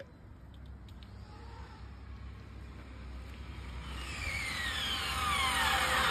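Electric RC drag car's motor whine, rising in level and falling in pitch through the second half as the car slows near the microphone, with tyre rumble on asphalt underneath.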